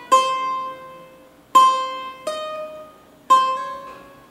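Cavaquinho played single-note, slowly picking the notes of a solo phrase: three clear picked notes about a second and a half apart, each left to ring, with one softer change of note about two seconds in, sounded by the fretting hand rather than a new pick, as in a pull-off.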